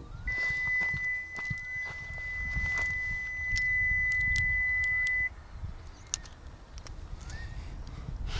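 A steady high electronic tone, one unchanging pitch, sounds for about five seconds and cuts off suddenly, over a low rumble. A bird chirps a few short rising notes, about four times.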